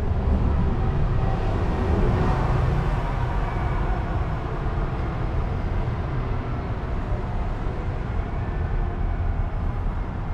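Street traffic noise: a steady low rumble that swells over the first few seconds as a vehicle goes by, then settles.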